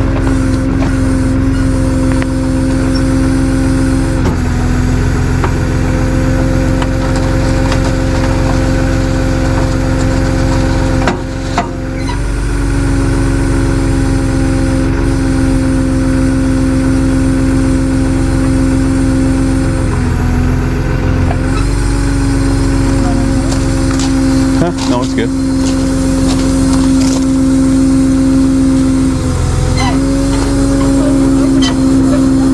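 Tow truck's engine idling steadily close by, a constant low rumble with a steady hum whose pitch shifts slightly a few times.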